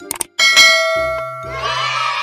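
Outro animation sound effects: two quick mouse clicks, then a bright bell ding that rings on and fades as the notification bell is clicked. About a second and a half in, a cheering-crowd sound effect swells in over background music.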